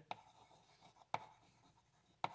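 Chalk writing on a blackboard: faint scratching with two sharp taps of the chalk about a second apart.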